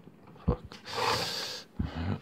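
A man mutters a curse, then lets out a long breathy exhale like a sigh.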